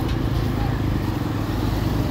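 Street traffic noise: a steady low rumble of road vehicles and passing motorcycles.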